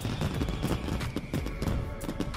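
Background music overlaid with a fireworks sound effect: repeated bangs and crackles.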